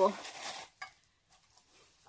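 The tail of a woman's words, then faint rustling and one small click as a cardboard gift box with tissue paper is handled.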